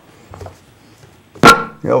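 Quiet room tone, then a short, sharp burst of laughter about one and a half seconds in, followed by a spoken exclamation.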